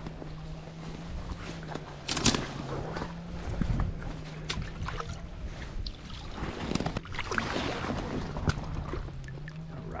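Water splashing and sloshing as a hooked largemouth bass thrashes at the surface of the shallows while being landed, with scattered sharp clicks and knocks. A steady low hum runs underneath.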